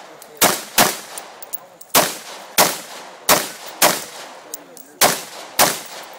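AR-15-style semi-automatic rifle firing in pairs: eight shots in four double taps, the two shots of each pair about half a second apart, each shot with a short ringing echo.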